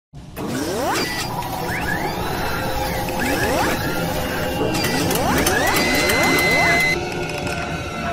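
Television news opening sting: a run of rising electronic sweeps over a music bed, the last one levelling into a held high tone that cuts off about seven seconds in.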